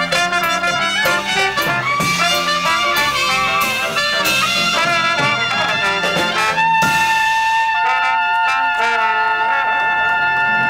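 Live Dixieland jazz band playing, with horns leading over drums and the rhythm section. About two-thirds of the way through, the drums stop and the band holds long sustained notes.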